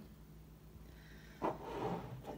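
Quiet room tone, then about one and a half seconds in a soft knock and a brief rustle as a glass candle jar is handled on a wooden table.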